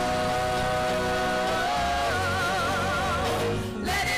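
Women's voices singing a gospel worship song over steady low accompaniment, holding long notes with vibrato, with a brief drop just before the end.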